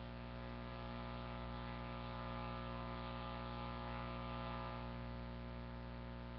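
Faint, steady electrical mains hum with a buzzy stack of overtones, unchanging throughout.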